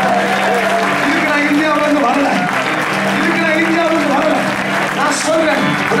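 Many voices praying and praising aloud at once, with clapping, over a steady low note held on an electronic keyboard.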